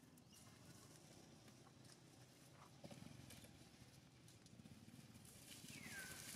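Faint rustle and crackle of dry fallen leaves under moving macaques, with a few soft taps, and a short, high falling chirp at the very end.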